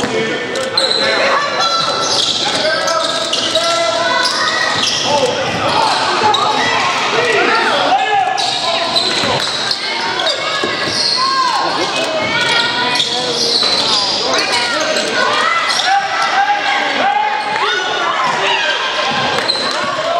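A basketball game in a gym: a ball bouncing on the hardwood floor amid many overlapping voices of players and spectators calling out, all echoing in the large hall.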